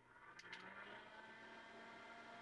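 Near silence: a faint click about half a second in, then the mini rechargeable USB desk fan's faint, steady whir as it runs.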